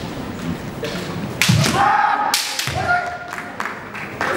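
Kendo exchange: sharp cracks of bamboo shinai strikes about a second and a half in and again about a second later, each with a long, held kiai shout from the fencers.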